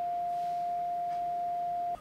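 One steady tone from a software-defined radio receiver in CW mode: the beat note of a carrier received at 3.8 MHz on the 80-meter band. It cuts off suddenly near the end.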